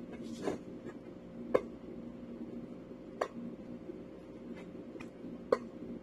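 Whole eggplant having holes poked in its skin by gloved hands: a few sharp clicks spaced irregularly, the loudest about one and a half and five and a half seconds in, over a steady low hum.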